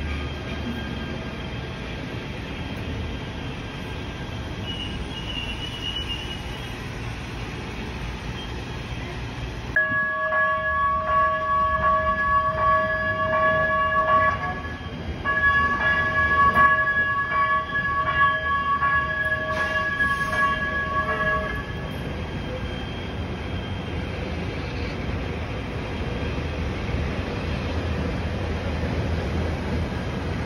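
Los Angeles Metro P3010 light rail train sounding its horn in two long blasts as it crosses a street, the first about four seconds long and the second about six. Before and after the blasts, the train runs and traffic carries on steadily.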